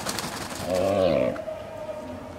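A bird's low cooing call: one wavering call about half a second long, with a short click just before it.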